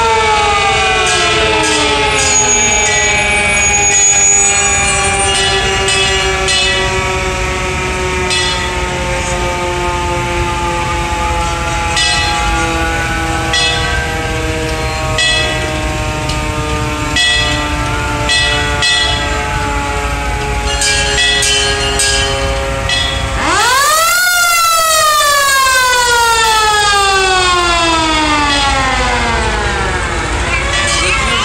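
Several vintage fire-truck sirens wailing together in long, slowly falling tones as they wind down. About 23 seconds in, one siren winds up sharply and then slowly falls again.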